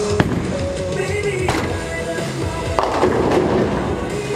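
Music playing over the clatter of a bowling ball rolling down the lane and crashing into the pins about three seconds in.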